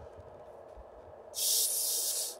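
Carbonated gas escaping with a loud, steady hiss as the screw cap of a plastic bottle of Pur Aqua sparkling water is twisted loose, starting about a second and a half in. The bottle had been rolled around beforehand, so it is about to foam over.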